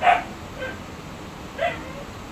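A dog barking in the background: three short barks, a loud one at the start, a faint one about half a second later, and another loud one near the end.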